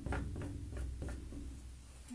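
Palette knife dabbing and scraping acrylic paint onto canvas with its edge, making grass strokes: a quick run of about six light taps and scrapes in the first second and a half, over a low hum.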